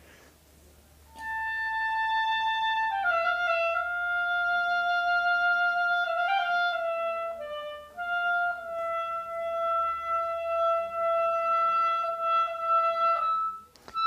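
Clarinet playing a slow, legato melody, starting about a second in: a long held high note, a step down to a lower note, a few shorter notes and a brief break about eight seconds in, then a long held note that ends about a second before the close.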